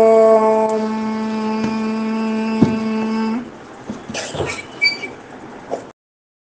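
A single steady pitched drone, held at one note at the close of a Sanskrit chant, stops abruptly about three and a half seconds in. Faint clicks and small handling noises follow until the audio cuts off just before the end.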